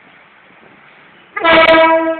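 Railcar horn sounding one loud blast at a steady pitch, starting suddenly about one and a half seconds in.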